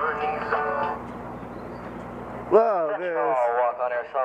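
Music fading out about a second in, a short stretch of outdoor background noise, then from about two and a half seconds a person's voice with strongly swooping, rising and falling pitch.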